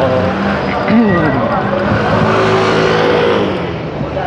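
Motor vehicle engine in city traffic, its pitch rising and then falling about a second in before holding steady.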